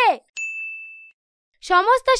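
A single clear bell-like ding, struck about a third of a second in, ringing on one steady tone and fading away within about a second.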